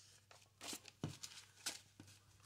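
Paper banknotes rustling and flicking as a stack of bills is handled and counted by hand, in about four short soft bursts, with a soft knock against the table about a second in.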